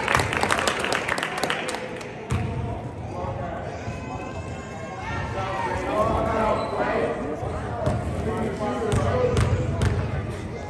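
Basketball bouncing on a gym court several times, with a mix of people's voices and a few sharp clicks in the first couple of seconds.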